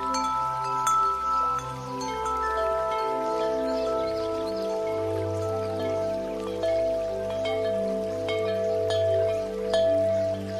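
Ambient background music: bell-like chime tones over held chords and a low note that pulses about once a second, with the chord shifting a few seconds in.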